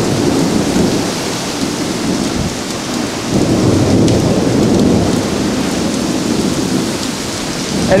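Heavy rain and strong wind of a severe thunderstorm, a loud steady rush that dips briefly and swells again about three seconds in.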